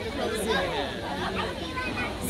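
Several people talking at once in overlapping chatter, none of it picked out as clear words.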